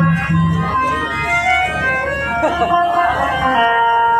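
Harmonium playing a melodic interlude of held, reedy notes that change every second or so, with no singing or drumming.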